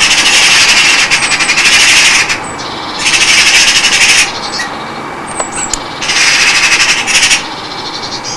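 Harsh, raspy screeching from birds in three bursts of one to two seconds each, with thin, high, falling calls in the quieter gaps between.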